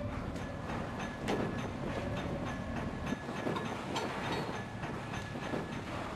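Killer whales underwater, heard through a hydrophone: a quick, irregular series of echolocation clicks, with a faint call and a low rumble underneath.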